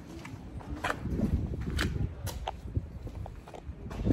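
Footsteps on cobblestones: a few sharp heel clicks about a second apart, over a low rumble of wind buffeting the microphone.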